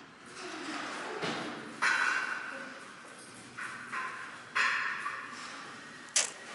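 Footfalls and scuffs of a dog and its handler running on indoor agility turf: a few sudden, hissy scuffs, each fading within about half a second.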